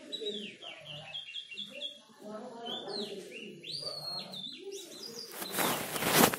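Small birds chirping in the background: repeated short, high chirps that slide downward, including a quick run of them in the first half. A short burst of rustling noise comes near the end.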